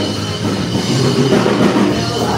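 Live rock band playing, with the drum kit prominent and guitars over it.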